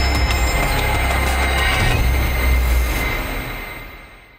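Intro theme music with a heavy, rumbling bass, fading out over the last second.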